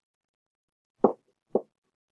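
Two brief knocks about half a second apart.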